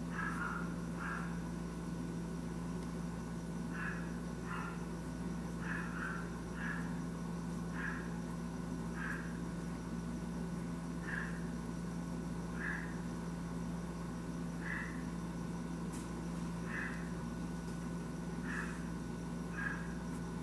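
An animal's short chirps repeat irregularly every second or two over a steady low hum.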